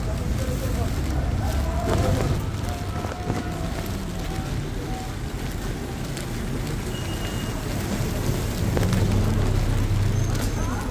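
Rainy city street ambience: a steady rumble of traffic and rain with indistinct voices of passers-by. A car engine grows louder near the end as a car comes slowly up a narrow lane.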